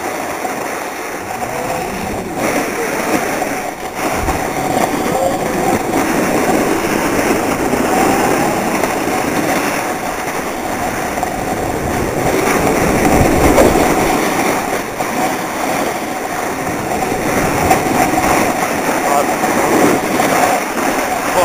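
Continuous scraping and hissing of skis or a snowboard sliding fast over hard-packed, tracked snow on a downhill run, loudest a little past the middle.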